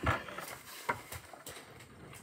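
Faint rustling and a couple of soft knocks from a hardback picture book being handled and its open pages swung round.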